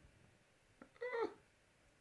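One short pitched vocal call about a second in, bending up and down in pitch, just after a faint click; otherwise low room tone.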